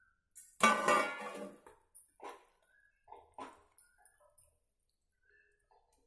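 A steel spoon striking a steel kadhai with a loud ringing clank just over half a second in, followed by several lighter clinks and scrapes of the spoon against the pan as the fried banana koftas are stirred into the gravy.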